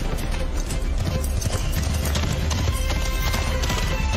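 Horse galloping, a rapid run of hoof strikes, over background music in a film soundtrack.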